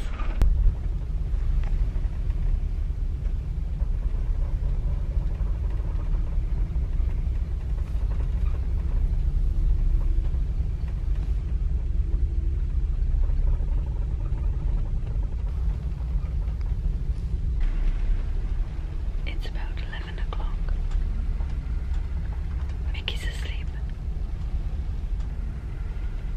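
Deep, steady rumble of a car ferry's engines and hull, heard inside a passenger cabin while the ship rocks in a rough sea.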